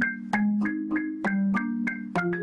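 Marimba music: a line of struck mallet notes, about three a second, each ringing briefly, over lower notes that sound longer.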